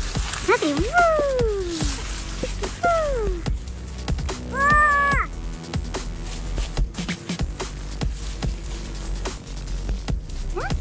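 Background electronic music plays throughout. Over it a young child's high voice makes a few short falling squeals in the first few seconds and one held note about halfway through.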